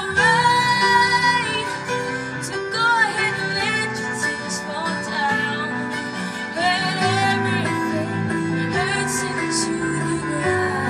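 A young woman singing a melody into a microphone over instrumental accompaniment, holding a long note with vibrato near the start.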